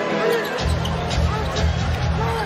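Arena game sound: a basketball dribbled on the hardwood court, with voices and music that has a heavy low pulsing beat coming in about half a second in.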